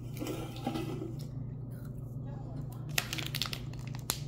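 Quiet, low talk with small handling noises over a steady low hum, and a sharp click about three seconds in.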